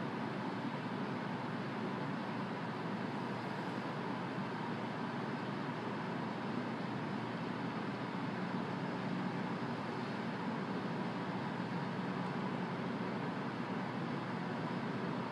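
Steady, even background noise with no distinct sounds in it, holding level throughout.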